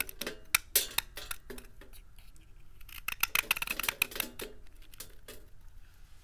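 A utility knife blade cutting and shaving a hard bar of soap with a silver coating, with crisp crackling snaps as chips break off and scatter on the table. The snaps come in two flurries, the second starting about three seconds in, with a few more near the end.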